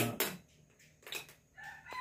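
A sharp click at the start, then a rooster crowing faintly from about a second and a half in.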